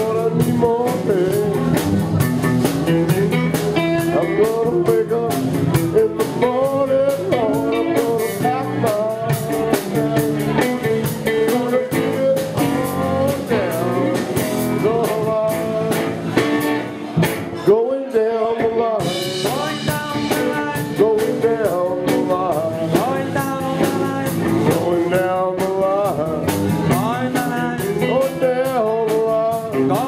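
Live blues-rock band playing an instrumental passage: electric guitar lead with bending notes over drum kit and a steady low accompaniment. About eighteen seconds in, the low end drops out for a moment before the band comes back in.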